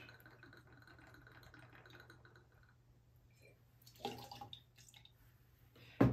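Spiced rum pouring faintly from a bottle into a metal jigger for the first few seconds, then a short louder sound about four seconds in.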